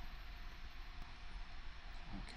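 Room tone: a faint, steady hiss with a low hum from the recording microphone, with no distinct sound events.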